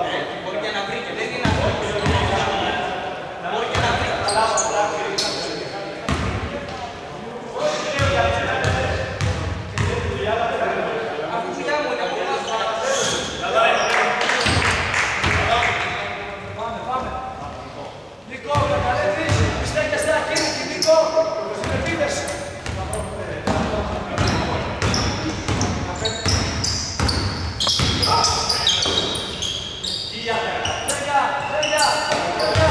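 Basketball bouncing on a hardwood court, repeated short thuds that echo in a large indoor hall, with voices calling out over them.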